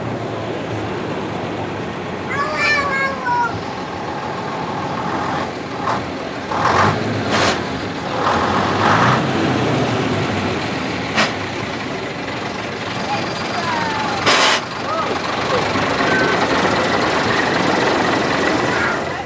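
An AEC six-wheel lorry's diesel engine running as it drives slowly past, with several short sharp hisses along the way, over people talking.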